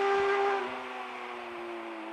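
The tail of an electronic dance track: a held synth chord fading out, its notes sliding slowly down in pitch, dropping in level about half a second in.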